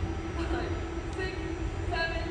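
A woman's faint voice calling out dance counts in an even rhythm, over a steady low rumble and hum.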